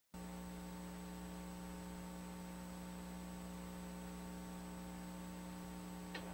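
Steady electrical mains hum over a low hiss, with nothing else happening.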